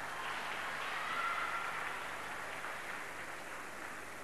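Audience applauding, a steady even patter of clapping that swells slightly about a second in.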